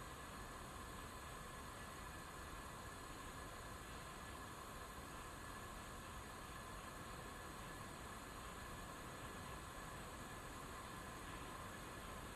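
Faint steady hiss with a faint, even high hum running underneath.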